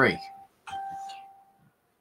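A single bell-like ding: one steady tone that sets in a little over half a second in and fades away over about a second.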